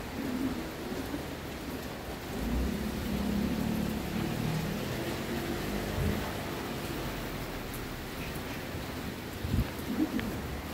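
Outdoor street ambience: a steady wash of noise with a low rumble that swells about two and a half seconds in and eases off a little later, and a short low thump near the end.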